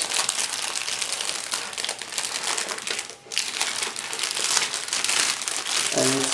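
Clear plastic bag of model-kit sprues crinkling as it is handled and turned over, with a brief lull about halfway.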